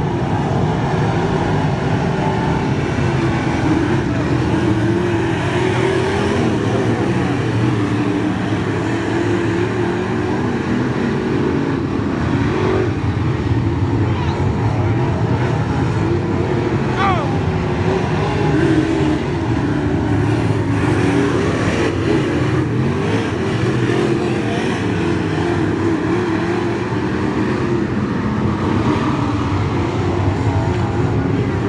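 Steel-block V8 engines of limited late model race cars running laps on a dirt oval, a steady, continuous engine drone with the pitch wavering as cars pass and go round the turns.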